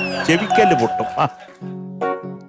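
Voices over a light background music bed, with a short doorbell-like chime sound effect about half a second in; the music carries on alone near the end.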